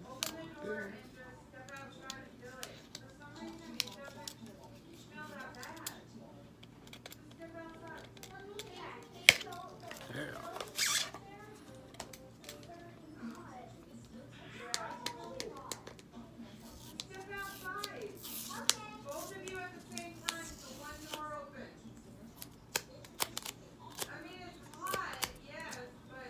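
A cardboard mailer being cut open and handled, with rustling, scraping and tearing sounds and a sharp click about nine seconds in, over faint background voices and music.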